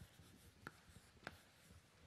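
Chalk writing on a blackboard: faint scratching strokes with a couple of light, sharp taps.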